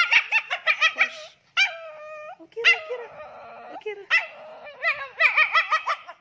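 Shih Tzu whimpering and yelping in labour: a quick string of short high cries, two longer drawn-out whines in the middle, then another quick string near the end, the sounds of her straining through contractions while delivering a puppy.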